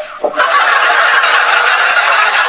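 A person imitating a vacuum cleaner with their voice, a joke on 'vakum'. It is a loud, steady, noisy whoosh that starts about half a second in and holds for about two seconds.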